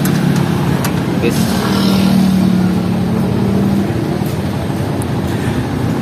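Steady road-traffic noise, with a vehicle engine droning louder for a couple of seconds in the middle. A few light metallic clicks come from a wrench working the coolant-reservoir bolts.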